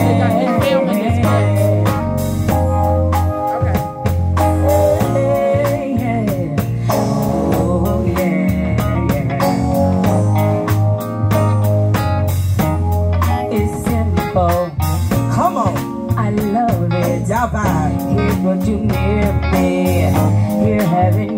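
A live band playing through PA speakers: electric guitar and drum kit with a steady bass line, and women singing into microphones.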